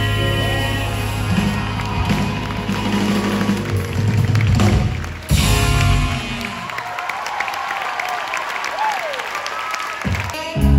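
Live band with horns, drums and bass guitar playing the last bars of a song, which stops about seven seconds in; the audience then applauds and cheers.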